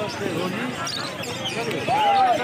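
A cage full of lovebirds chirping and chattering, with people's voices in the background.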